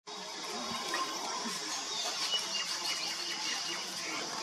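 Outdoor tree-canopy ambience: a steady high hiss with faint, scattered bird chirps.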